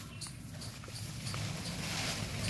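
Quiet garden ambience: lemon-tree leaves and twigs rustling as the branches are handled, with a few soft clicks. A faint, regular high chirping runs underneath.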